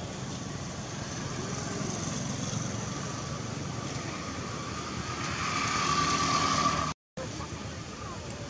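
A motor vehicle running on a road nearby, its sound steady and then growing louder toward the end before cutting off abruptly.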